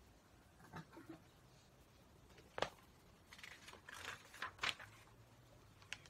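A picture book's paper pages handled and turned: soft rustling about three to five seconds in, after a few faint clicks and one sharper click about two and a half seconds in.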